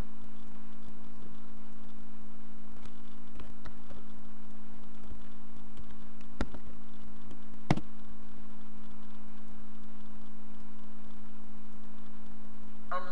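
A steady low electrical hum on the recording, with two sharp mouse clicks about six and a half and seven and a half seconds in and a few fainter ticks.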